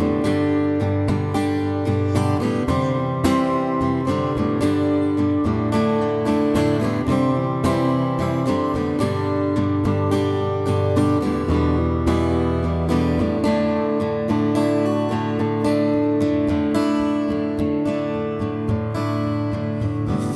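Solo acoustic guitar strummed in a steady run of chords, the instrumental intro of a country song.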